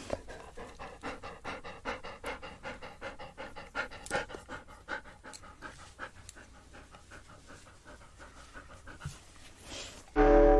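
A dog panting steadily, about three quick breaths a second, growing fainter toward the end.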